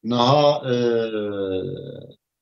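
A man's voice holding one long drawn-out syllable for about two seconds, fading out near the end.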